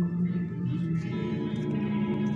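Background music with steady, sustained tones.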